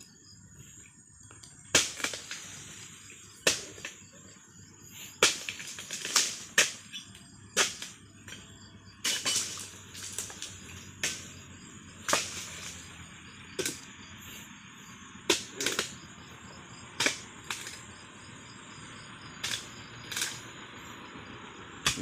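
Sharp chopping knocks of a dodos, a chisel blade on a pole, striking into the fronds and fruit-bunch stalk of a low oil palm. About twenty blows at uneven intervals of one to two seconds. Insects chirp steadily behind.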